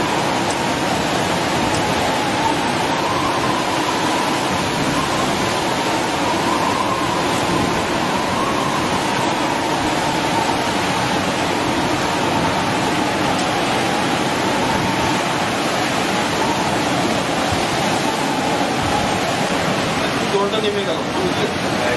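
Steady rush of cyclone wind and heavy surf, an unbroken roar of noise with no single crashes standing out.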